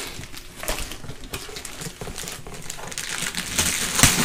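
Gift-wrapping paper rustling and crinkling as a wrapped box is handled, turning to louder tearing of the paper near the end.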